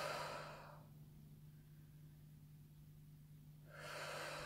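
A woman's slow, audible breath out, like a sigh, fading away about a second in; after a quiet pause another soft breath begins near the end. A faint steady low hum lies underneath.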